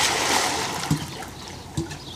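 Swimming-pool water splashing and churning after a child jumps in, the wash of water fading steadily as the splash settles.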